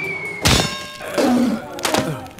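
Cartoon sound effects: a falling whistle ends in a heavy thud about half a second in, with a ringing tail, then a brief voice and a second thud near the end.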